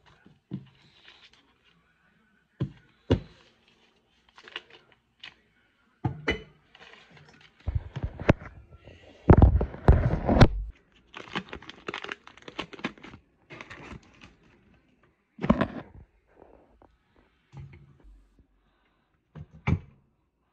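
Irregular kitchen handling noises: butter-stick paper wrappers crinkling and tearing, with knocks and thuds on the counter. A louder scuffle of handling comes about halfway through as the phone camera is moved.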